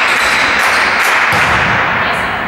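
Loud, steady sports-hall noise during a volleyball rally, with a few light taps of the ball or players' shoes.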